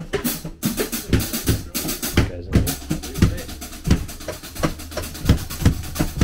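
Drum kit being played in a steady groove: kick-drum thumps about twice a second with snare hits and cymbal wash.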